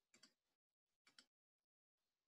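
Near silence with two faint, short clicks about a second apart.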